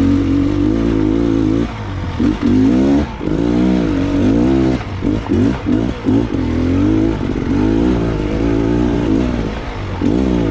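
Trail motorcycle engine revving up and down under load while climbing a steep, rocky track, the pitch rising and falling every second or so with the throttle.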